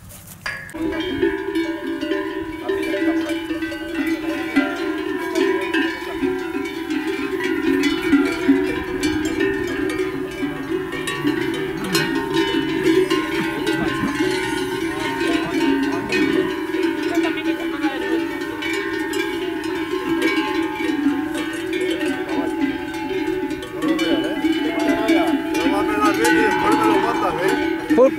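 Many livestock bells (cencerros) clanging together without a break, as from a herd on the move. The clanging starts about a second in.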